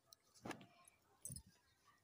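Near silence, with two faint brief clicks: one about half a second in, the other just over a second in.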